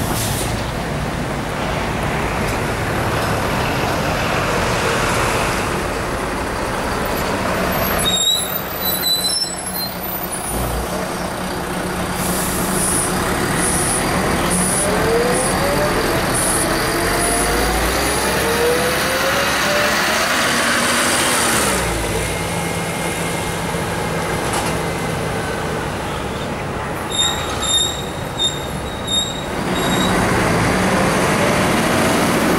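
Mercedes-Benz O405 city bus with a Volgren body pulling away. Its six-cylinder diesel engine runs steadily, then rises in pitch as the bus accelerates, and drops at a gear change about two-thirds of the way through. There are brief high squeaks about eight seconds in and a few more near the end.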